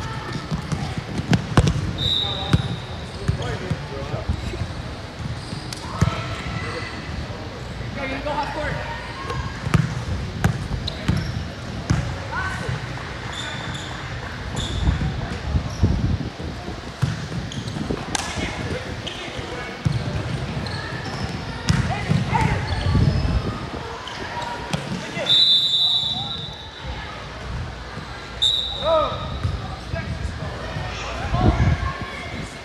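Basketball game in a large gym: a ball bouncing on the hardwood court at irregular intervals, with indistinct shouts from players and onlookers and a few short high squeaks.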